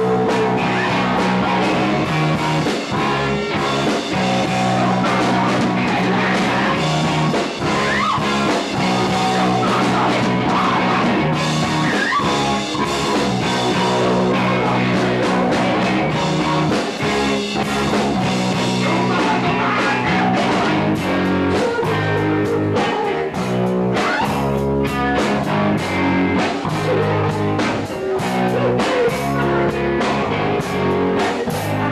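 Rock band playing live: electric guitar and drum kit, with no break in the music.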